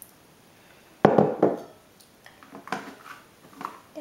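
Kitchen utensils being handled: a sudden loud clatter about a second in, then a string of light, irregular knocks and clinks from a glass measuring jug and a metal spoon against a plastic tub and the worktop.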